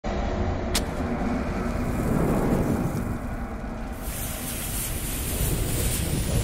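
Sound effects for an animated logo: a deep, steady rumble with one sharp click about a second in. From about four seconds in a hiss like a burning fuse joins it, leading up to a bomb blast.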